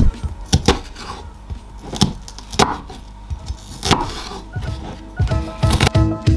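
Kitchen knife chopping a red onion on a wooden chopping board: a handful of sharp knocks of the blade on the wood, irregularly spaced, over background music.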